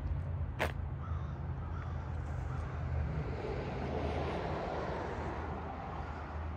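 Bird cawing faintly over a steady low rumble, with one sharp click about half a second in.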